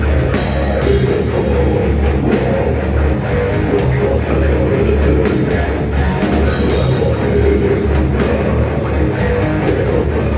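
Death metal band playing live through a stage PA: distorted electric guitars over a drum kit, loud and continuous.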